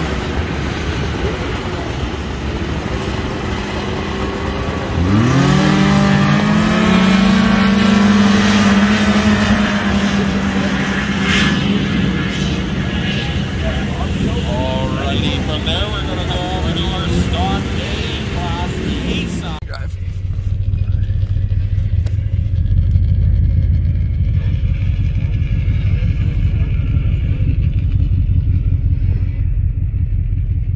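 Vintage two-stroke snowmobiles at a drag-race start: engines running, then about five seconds in one revs up sharply at launch and holds a high, steady pitch as it runs down the track. About twenty seconds in the sound cuts off abruptly to a low steady rumble.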